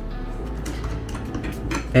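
Small clicks and clinks of a plastic GoPro mount and camera being handled and fitted together, over soft background music.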